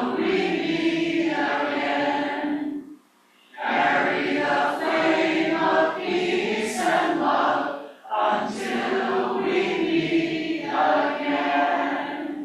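A congregation singing a benediction together as a group, in sung phrases with a short break about three seconds in and another about eight seconds in.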